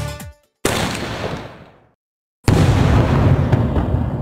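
Aerial firework shell fired from its tube with a sharp bang about half a second in, then bursting overhead with a louder boom about two seconds later that dies away slowly.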